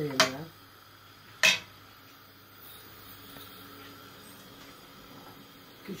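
Two sharp metallic clinks of a metal ladle knocking against a steel cooking pot, just over a second apart.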